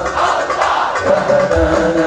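Sholawat: a group of men singing devotional verses in unison with low, regular hand-drum beats. The singing breaks off into a brief smear of noise at the start and a new sung line with the drums comes in about one and a half seconds in.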